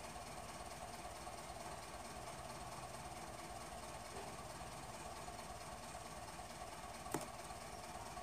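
Faint steady background hum and hiss, with one short light click about seven seconds in.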